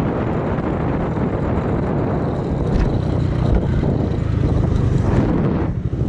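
Suzuki Raider 150 Fi motorcycle ridden at speed, heard from the rider's seat: the single-cylinder engine under a steady rush of wind noise. The sound dips briefly near the end.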